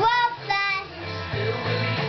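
A young child singing along to a recorded song with guitar and a steady bass line; his sung notes fall mostly in the first second.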